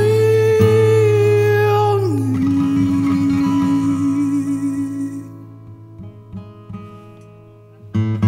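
Mandarin pop song: a singer holds one long note over a guitar backing. The note steps down in pitch about two seconds in and fades out by about five seconds. The music then dies down low before the band comes back in loudly at the very end.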